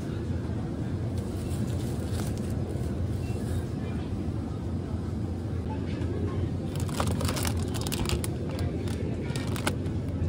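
Clear plastic produce container crinkling and clicking as it is picked up and handled, several sharp crackles late on, over a steady low hum of supermarket ambience with indistinct background voices.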